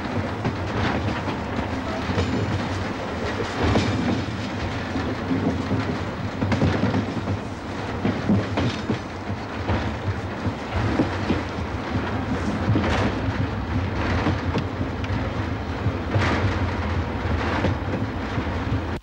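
Railway wagon rolling on the rails: a steady low rumble with irregular knocks and rattles.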